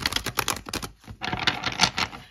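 A deck of tarot cards being shuffled by hand: rapid flicking and slapping of cards in two runs, with a brief pause about halfway.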